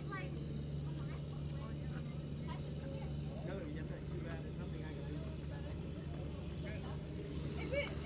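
Outdoor field ambience: a steady low mechanical hum, like a distant engine, with faint voices of people far off.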